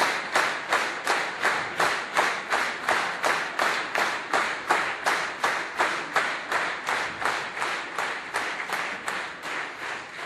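A crowd clapping in unison in a steady rhythm, about three claps a second, slowly getting quieter near the end.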